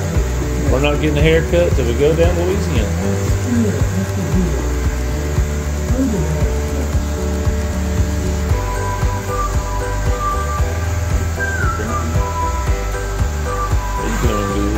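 Electric hair clippers buzzing steadily through a haircut, under background music that carries a melody from about halfway through. A voice is heard briefly in the first few seconds.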